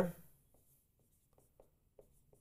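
Dry-erase marker writing on a whiteboard: a few faint, short strokes as letters are drawn.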